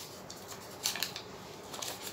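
A small folded paper slip being handled and unfolded by hand: a few soft, crisp paper rustles about one second in and again near the end.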